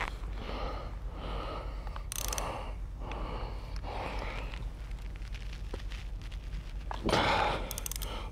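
Quiet hand-tool work: a small ratchet with a Torx bit loosening the cam phaser's cover bolts, giving a few faint scattered clicks, with the worker's breathing coming and going every second or two.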